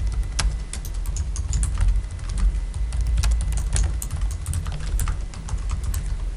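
Irregular clicking of typing on laptop keyboards, several keystrokes a second, over a steady low room rumble.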